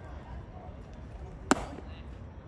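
A baseball pitch smacking into the catcher's mitt: one sharp, loud pop about a second and a half in, with a brief ring after it.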